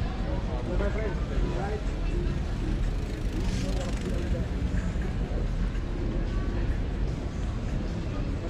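Passers-by talking indistinctly over a steady low rumble of outdoor background noise.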